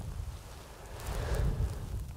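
Wind buffeting the microphone outdoors: an uneven low rumble that dips in the middle and picks up again.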